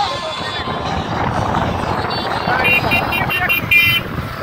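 Motorcycles riding along a road at speed, engines and wind noise on the microphone, with voices mixed in. Near the end comes a quick run of short, high beeps.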